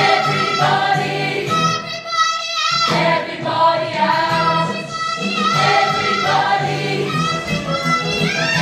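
A young ensemble cast singing a musical-theatre chorus number: a girl's lead voice at the front with the group joining in, held notes with vibrato, over instrumental accompaniment with a steady bass line.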